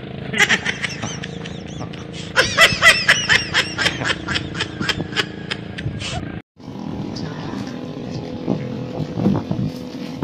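A man laughing in a long run of short, quick bursts for about five seconds, over a steady low engine hum.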